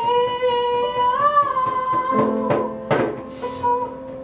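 Live acoustic music: a woman singing one long held note, which bends up briefly, then acoustic guitar plucks and a strum in the second half, with piano.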